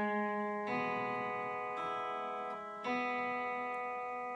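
Telecaster-style electric guitar picking a three-string chord shape: the first fret on the G string with the open B and E strings. The notes are struck one at a time about once a second and left ringing into each other.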